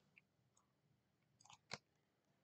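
Near silence: room tone, with a couple of faint short clicks about one and a half seconds in.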